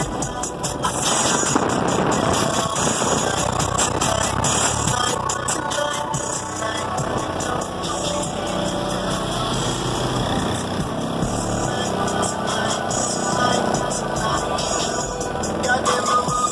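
A car audio system in a pickup truck playing bass-heavy music at high volume, built for very low bass below 20 Hz. It plays loud and steady, without a break.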